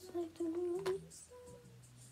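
A girl humming a wandering tune softly to herself, with a small click about a second in.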